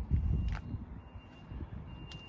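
Low rumbling handling noise on the handheld camera's microphone with a single sharp click about half a second in, then a quieter low rumble.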